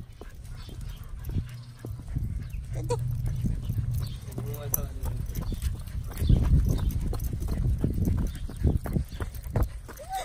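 Irregular footsteps on a concrete footpath during a walk with a small dog on a leash, over a low rumble of wind or handling on the phone's microphone.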